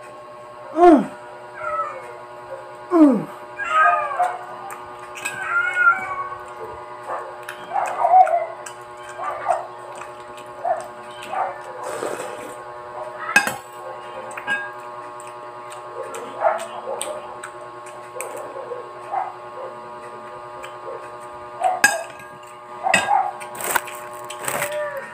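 Short pitched vocal calls that glide up and down, coming about once a second and thinning out later, with scattered clicks over a steady hum.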